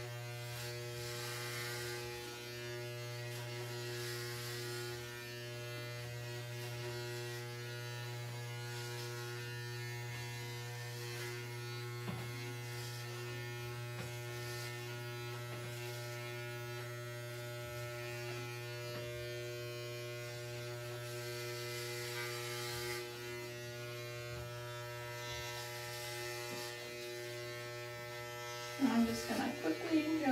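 Corded electric hair clipper fitted with a four guard, running with a steady low buzz as it is pushed up through the hair on the side of the head.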